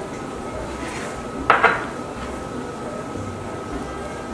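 A single sharp clink of white ceramic ramekins being handled on a granite countertop about a second and a half in, over a faint steady high hum.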